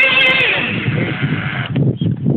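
Traxxas Revo 3.3's two-stroke nitro glow engine at high revs, a steady high whine that eases off about half a second in. Near the end the whine drops out, leaving a low, rough rumble.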